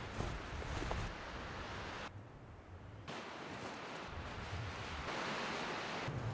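Wind noise and rustling outdoors, a steady hiss with a low rumble. It drops abruptly to a quieter stretch about two seconds in and comes back about a second later.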